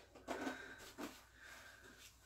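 Faint, brief handling noises as a styrofoam packing box is moved and set down on carpet, three soft sounds about half a second apart.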